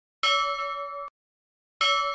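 Two identical bell-like ding sound effects about a second and a half apart, each ringing with several steady tones and cut off short after under a second, accompanying the subscribe and notification-bell taps.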